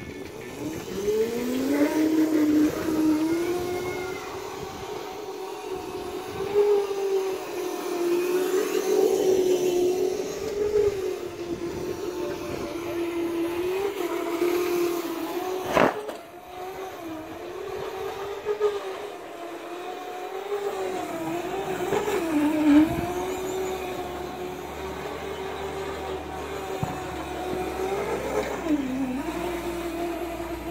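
Electric motor of a Razor Crazy Cart XL drift kart whining as it drives, rising in pitch as it pulls away in the first couple of seconds, then holding fairly steady with brief dips as it slows and turns. A single sharp knock about halfway through.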